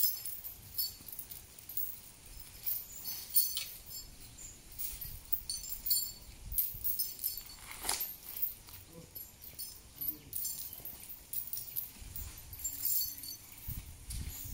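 Light metallic clinks and jingles at irregular moments from metal on a moving Sri Lankan elephant, with low thuds near the end.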